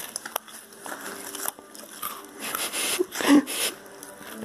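A chocolate milk carton's plastic screw cap being twisted open and its seal pulled off: a few small clicks at first, then crinkling, scraping noises in the second half.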